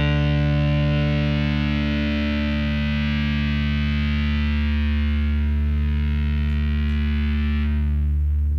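Distorted electric guitar and electric bass holding one sustained chord, ringing out as the final chord of a rock song; the upper ring fades near the end.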